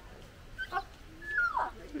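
White cockatoo calling: short chirps, then a whistled note that holds, steps down and slides lower about one and a half seconds in.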